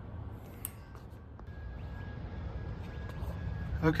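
Low steady background rumble with a faint click about half a second in; a man's voice starts right at the end.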